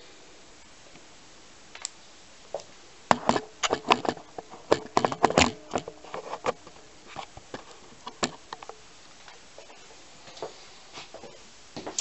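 Handling noise of a camera being fitted back onto its tripod: a scatter of sharp clicks, taps and knocks, thickest in the middle seconds.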